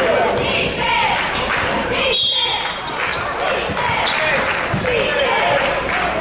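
A basketball being dribbled on a hardwood gym floor, its bounces echoing in a large gymnasium over steady crowd chatter.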